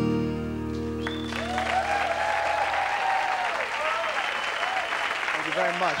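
The band's final chord on acoustic guitar and keyboard rings out and fades by about three seconds in, while a studio audience breaks into applause and cheering from about a second in, continuing loudly to the end.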